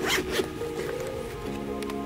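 The zip of a small hard-shell drone case being pulled open, a short rasp, under steady background music.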